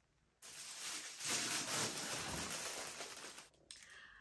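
Rustling and crinkling of packaging being handled. It is a dense, continuous rustle lasting about three seconds, starting abruptly about half a second in.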